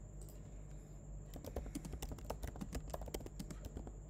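Computer keyboard typing a terminal command: quick, irregular key clicks starting about a second in, fairly faint.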